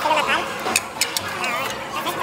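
Indistinct voices talking, with a few light clicks around the middle.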